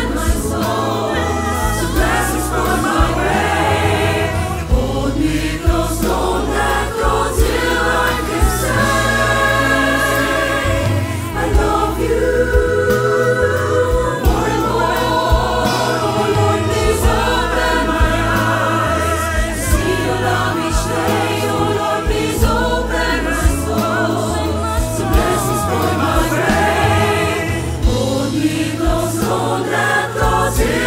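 A choir sings a slow worship song with instrumental accompaniment over a steady bass line.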